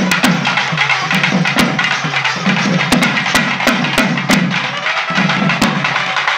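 Tamil folk drums, rope-laced and beaten with a stick and hand, playing a fast, steady dance rhythm. The low strokes drop in pitch, and sharp stick clicks cut through them.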